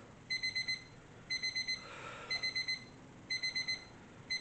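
Electronic timer alarm beeping: groups of four quick, high beeps, one group every second, four times. It marks the end of a timed one-minute exercise interval.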